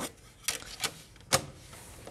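Plastic set square and pencil tapping and knocking on a drawing board as they are set in place: four short taps, the loudest about one and a half seconds in.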